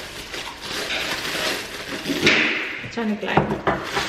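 Crumpled brown wrapping paper crinkling and rustling as it is pulled off a drinking glass, with a louder crinkle about two seconds in.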